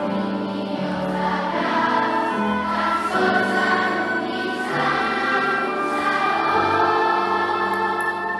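A massed school choir singing in a concert hall, accompanied by piano and an instrumental ensemble, with sustained chords that move every second or so.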